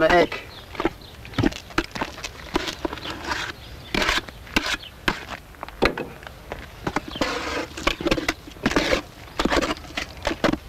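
Wet loam mortar being mixed in a metal drum, worked by a gloved hand and then stirred with a wooden paddle: irregular squelches and knocks against the drum. Voices talk in between.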